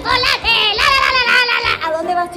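High-pitched, child-like singing with music.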